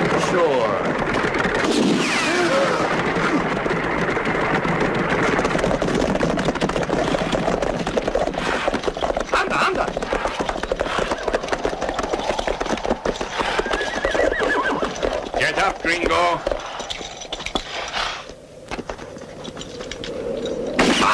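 Film sound effects of several horses neighing, with hoofbeats and men's voices, as mounted riders gallop around a stagecoach. A few sharp cracks come through in the middle.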